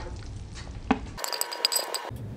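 Cookware sounds as a pan is tipped over a metal dish: one knock about a second in, then a short run of bright clinking with ringing tones, like metal or glass striking, which stops abruptly near the end.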